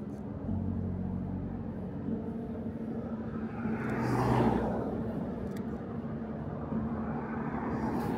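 Cars driving past on a city road. One goes by about halfway through, its tyre and engine noise swelling and then fading. Another comes up near the end, over a steady low hum.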